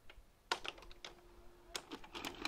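A quick run of sharp, small clicks and taps, starting about half a second in, with a faint steady hum under some of them.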